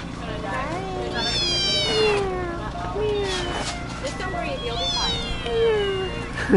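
Cat in an adoption cage meowing over and over, about four long calls that slide down in pitch, the loudest about a second in.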